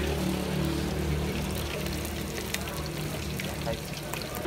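Oil sizzling and bubbling in a large aluminium pot as battered chicken proventriculus (proben) deep-fries, with a steady low hum beneath.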